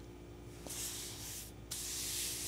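Soft rubbing or brushing noise close to the microphone, starting about half a second in, breaking off briefly near the middle and then resuming, over a faint steady hum.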